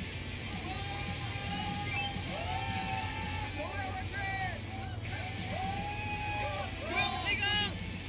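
Background music with people yelling and cheering over it, and a burst of excited shouting about seven seconds in.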